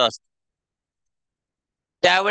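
Near silence: a man's voice over a microphone trails off in the first instant, then dead silence with no room sound at all.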